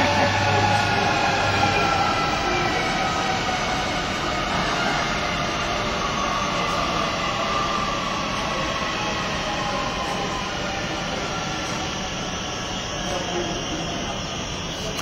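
Sydney CityRail double-deck electric train running past close by: a steady rumble of wheels on track with a whine that slowly falls in pitch, fading away as the last carriages go by.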